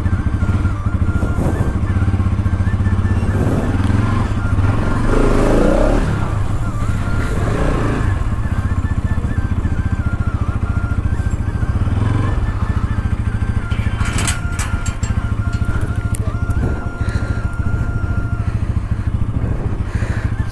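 Bajaj Pulsar NS200's single-cylinder engine running steadily at low revs as the motorcycle rolls slowly, heard close up.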